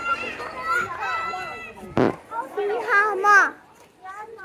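A young child's high-pitched voice calling and vocalizing without clear words, in gliding tones, with a single sharp thump about halfway through.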